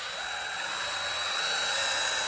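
DeWalt right-angle drill driving a wood screw into a two-by-four board: a steady motor whine with a high tone, getting slightly louder as the screw goes in.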